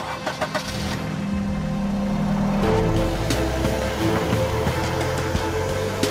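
Car engine running as the car pulls away, a low steady rumble that builds about a second in. Background music with sustained tones comes in about halfway through.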